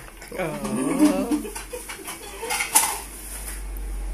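A short wavering vocal sound in the first second or so, then scattered clinks of dishes and cutlery being handled, the sharpest nearly three seconds in.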